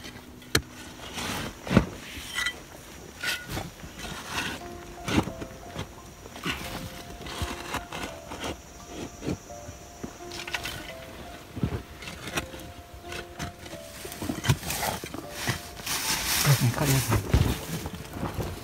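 Short-handled digging tool chopping and scraping into hard red clay soil: irregular knocks, often a second or less apart. Background music with long held notes runs under it through the middle.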